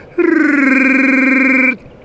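One long, steady, pitched yeti cry lasting about a second and a half, falling slightly in pitch with a fast flutter at its start.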